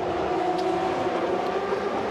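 GP2 race cars' 4-litre V8 engines running at high revs, a steady, even engine note holding its pitch.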